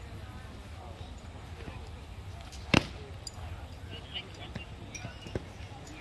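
One sharp thwack a little under three seconds in, with a couple of fainter taps later: foam-padded boffer weapons striking padded shields in sparring, over faint chatter from people around.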